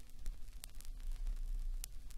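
Stylus tracking the silent lead-in groove of a 12-inch vinyl record on a Technics SL-1200 turntable: steady surface-noise hiss over a low rumble, with two sharp clicks, one about two-thirds of a second in and one near the end.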